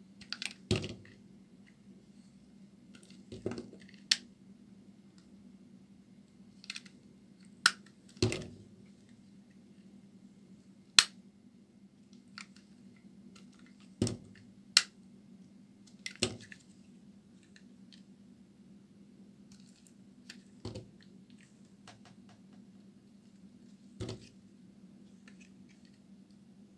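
A bar of dry soap being cut with a utility knife blade: irregular sharp crackles and snaps as pieces crack off, about a dozen over the stretch, with quiet between them.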